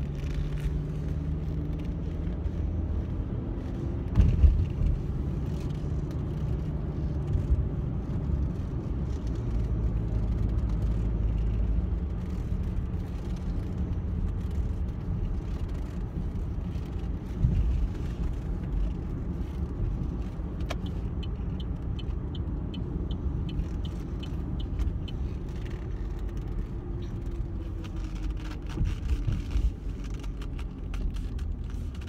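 Road noise inside a moving car: a steady low rumble from the engine and tyres, with a few brief knocks and, a little past the middle, a run of faint, even ticks about two a second.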